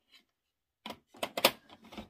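A run of clicks and knocks as craft supplies are picked up and moved about on a desk, starting about a second in, the loudest knock about half a second later.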